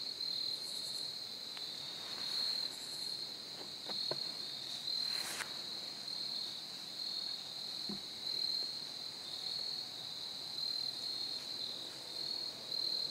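Crickets keep up a steady, high, slightly pulsing chorus. A few faint snaps and one brief rustle are heard, about four, five and eight seconds in.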